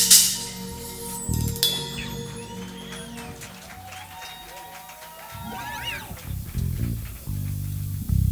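Music from a live jazz combo at the end of a tune: a loud final crash rings out and fades in the first second, then quieter music continues with held tones and a few sliding notes.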